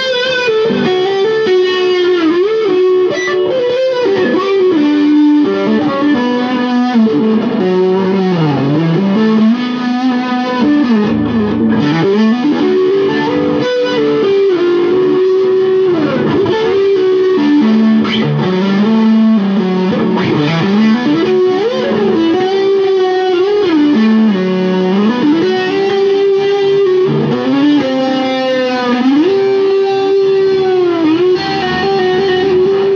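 Jackson Pro Series SL2Q electric guitar played through a Hughes & Kettner GrandMeister amp: a slow, melodic single-note lead with long held notes and many smooth pitch bends up and down.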